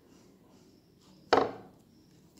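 Near silence broken by a single sharp knock about a second and a half in, fading quickly.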